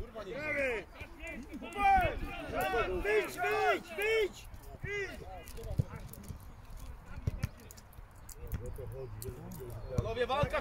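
Men's voices shouting short calls across an open pitch, several in the first few seconds, then quieter with a few faint knocks.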